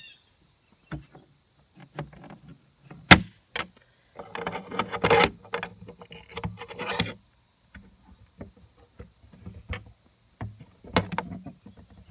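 Handling of a wooden chicken-coop door and its metal latch and hinges: scattered clicks and knocks, one sharp knock about three seconds in, and rattling, scraping stretches around the fifth and seventh seconds.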